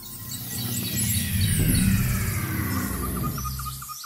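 Audio logo sting: a high tone sweeps steadily downward over a low rumble, swelling loud, then ends in a quick even run of bird-like chirps.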